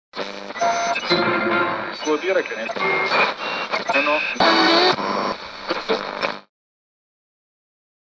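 Intro jingle: music mixed with voices and sliding pitch sounds for about six seconds, then cutting off suddenly to silence.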